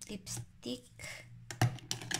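Lipstick tubes clicking and clattering against one another and the cup as a hand rummages through a cup of lipsticks, with a few sharp clicks close together in the second half.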